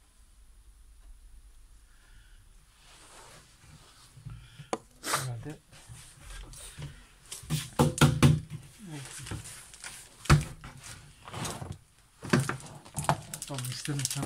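Near quiet room tone for the first few seconds, then indistinct talk mixed with a few sharp knocks and thumps from things being handled. The loudest knock comes about ten seconds in.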